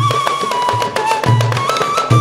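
Zapin music from a marawis hand-drum ensemble: two deep drum strokes, one at the start and one about halfway through, under quicker, lighter drum taps and a sustained melody line that holds a high note and steps up near the end.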